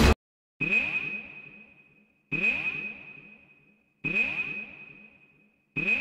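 The music stops abruptly, then four electronic sonar-style pings sound about 1.7 seconds apart. Each is a high ringing tone with falling sweeps beneath it that fades out over about a second and a half.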